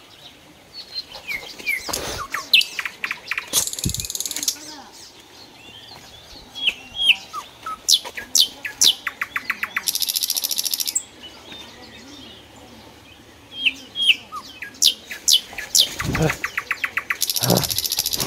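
Birdsong: sharp, quickly falling whistled notes, fast rattling trills and high buzzy phrases about a second long, the pattern repeating about every seven seconds. A few low bumps are mixed in.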